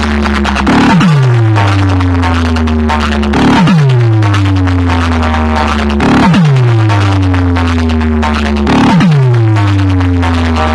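Loud electronic DJ competition track played through a large horn-loaded sound box rig. A deep bass note opens with a short hit, slides steeply down in pitch and holds low, repeating four times at about 2.7-second intervals.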